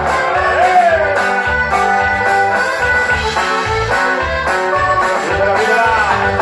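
Live band music played on stage: guitar and drums over a bass line that moves in a steady beat.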